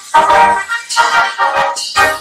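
A small band of trumpets and snare drum striking up a march-style tune, the trumpets carrying the melody over steady snare strokes.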